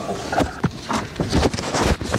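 Paper rustling, with a few soft knocks, as sheets of paper are turned and handled on a pulpit.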